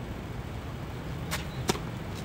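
Tennis racket striking the ball on a sliced second serve: two sharp pops about a third of a second apart, the second louder, over steady outdoor background noise.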